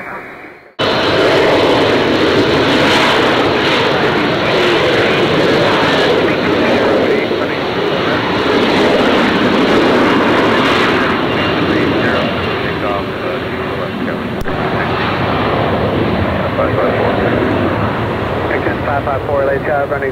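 Jet airliner engines running loud and steady, cutting in abruptly about a second in.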